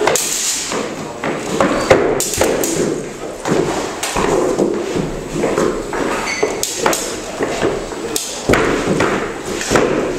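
Fencers' feet thumping and stepping on a wooden floor in a large hall, with rapier blades tapping and clinking together in irregular sharp knocks.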